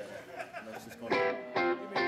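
Guitar being played with a few plucked notes, then two strongly struck chords about a second in and again half a second later.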